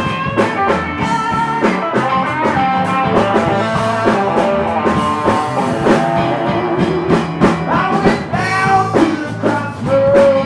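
Live band playing a blues-rock song: electric and acoustic guitars over a drum kit with a steady beat.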